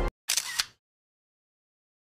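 Background music cuts off at the start. Then a camera shutter sound comes, two sharp clicks about a third of a second apart.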